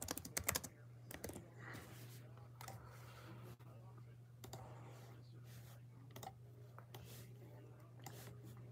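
Quick run of laptop keyboard clicks in the first half-second, then a few scattered clicks, over a low steady hum.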